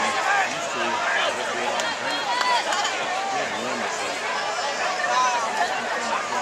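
Spectators at a high-school football stadium chattering, many voices overlapping at once with no single voice standing out.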